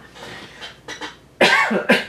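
A woman coughs, a sudden short burst about one and a half seconds in.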